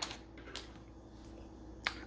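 Quiet room tone with a low steady hum, a faint tick about half a second in and a single sharp click near the end, as small cosmetic items are handled on the table.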